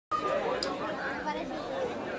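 Several people talking at once in indistinct chatter, with overlapping voices and no single clear speaker.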